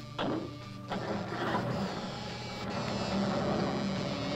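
A pickup truck's engine running steadily as it pulls away, with background music underneath, heard through a film soundtrack.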